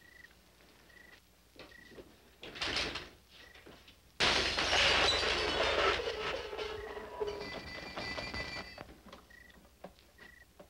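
Night ambience of crickets chirping in short repeated pulses. A little over four seconds in, a door bangs open with a sudden loud crash that rings and dies away over the next few seconds.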